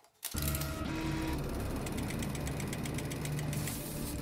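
Small film projector switched on and running: a steady, rapid mechanical clatter from the film-advance mechanism that starts abruptly a fraction of a second in.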